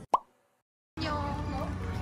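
A single short pop, like an edited-in sound effect, with a quick upward pitch sweep, followed by dead silence for most of a second. Then steady background noise comes in as the scene changes.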